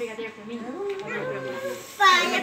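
Indistinct background chatter of several voices, quieter than the calls around it.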